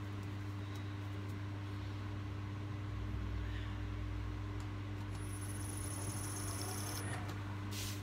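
Steady low electrical hum from workshop machinery, with a faint high whine for about two seconds past the middle.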